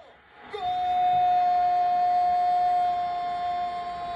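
A single long horn-like tone at one steady pitch. It starts about half a second in and holds without a break.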